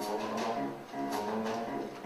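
Pit orchestra playing soft accompaniment to the musical number, with held notes and a couple of light percussive taps.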